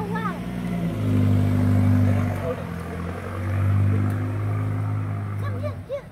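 A motor vehicle's engine hums low and steady, swelling twice in loudness, then cuts out just before the end.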